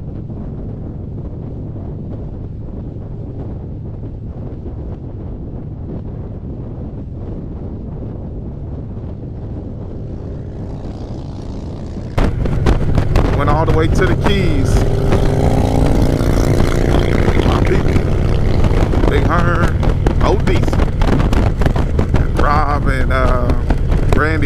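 Harley-Davidson touring motorcycle engine running steadily at highway speed, with wind rushing past the microphone. About halfway through the sound jumps suddenly louder and rougher, with heavier wind buffeting and wavering pitched sounds over the engine.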